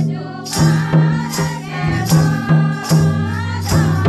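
Oraon folk music: a group singing together over steady strokes of a mandar, the two-headed barrel drum, with a hand rattle shaking along.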